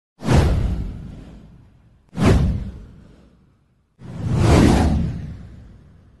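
Three whoosh sound effects from an animated title intro, about two seconds apart. The first two hit suddenly and fade away; the third swells up more gradually before fading.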